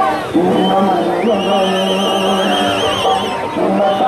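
A large crowd of voices shouting and chanting slogans together. A high, warbling whistle-like tone cuts in about a second in and stops just past three seconds.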